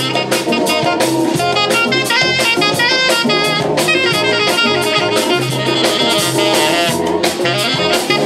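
Live jazz-funk band: a saxophone plays a line of quick notes over drum kit and electric bass.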